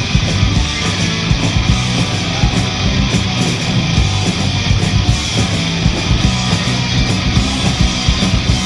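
Punk rock band playing live: distorted electric guitars, bass guitar and drums, loud and driving throughout.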